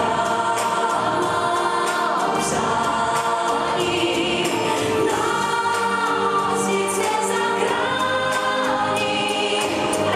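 A pop song with a sung lead voice over layered backing voices, playing continuously.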